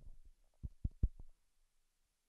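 A few dull, low thumps in quick succession, dying away about halfway through, then near silence.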